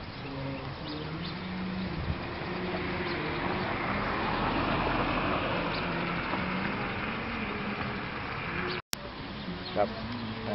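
Outdoor background noise with faint distant voices. The noise swells in the middle and eases off, and the audio cuts out for an instant near the end.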